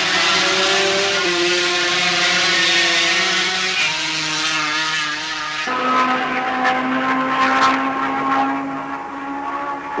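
Two-stroke 500cc Grand Prix racing motorcycles running at high revs. The engine note holds steady, stepping in pitch a couple of times, then switches abruptly to another steady note a little over halfway through.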